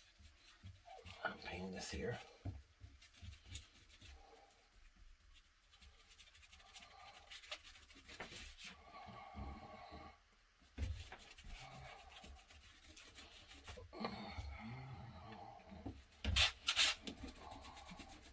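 A paintbrush spreading thinned water-based glue across leather: soft, irregular scratchy brushing strokes, with a louder knock near the end.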